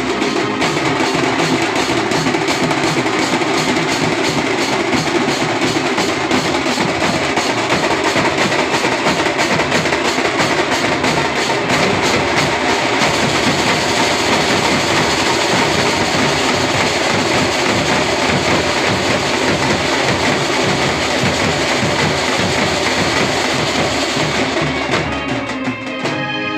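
Live banjo-party street band drumming: large marching bass drums and clashing cymbals beating a fast, steady rhythm. The drumming dies away just before the end.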